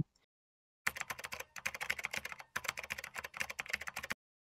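Typing on a computer keyboard: a quick run of key clicks begins about a second in, breaks off briefly near the middle, then runs on.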